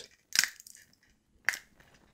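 3D-printed PLA plastic panels being folded, their tabs snapping into place: a short crackle of clicks about a third of a second in, then one sharp snap about a second and a half in.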